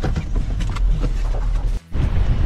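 Four-wheel-drive vehicle heard from inside the cabin while driving slowly on a rough sand track: a steady low rumble of engine and tyres with small knocks and rattles. It cuts off abruptly near the end.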